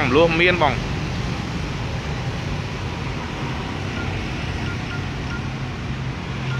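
A steady low mechanical hum with even background noise, holding level throughout.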